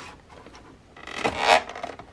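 A plastic VHS clamshell case being pried open: a short scraping rub of plastic about a second in, then a few small clicks.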